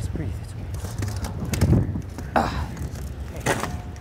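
Scattered scrapes and knocks of a barrel lid's locking ring being worked off by hand, with a few short bits of voice.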